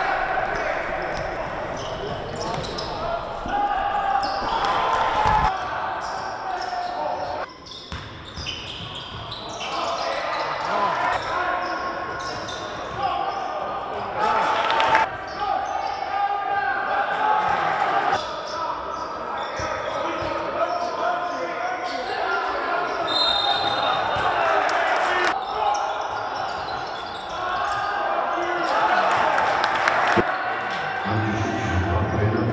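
Live game sound of a basketball game in a large hall: a ball dribbled on the hardwood court and voices of players and coaches calling out, cut abruptly several times as one play gives way to the next.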